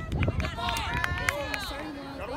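Several voices calling and shouting at once during a youth soccer game, some of them high-pitched, over a steady low wind rumble on the microphone.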